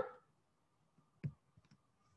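Faint room tone with one short click about a second and a quarter in, followed by a couple of fainter ticks.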